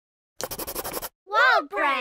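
Pencil scratching quickly across paper, a run of fast even strokes that stops after about half a second. Then a cartoon voice makes two loud, high calls that sweep up and down in pitch.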